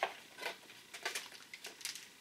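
Cardboard box flap and a plastic bait bag being handled: about half a dozen short crinkles and taps.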